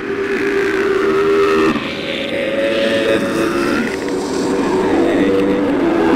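Experimental lo-fi horror noise music: layered droning tones with sliding, wavering pitches, the texture changing abruptly about two seconds in.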